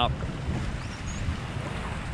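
Wind buffeting the microphone, a low uneven rumble, with a faint short high chirp about a second in.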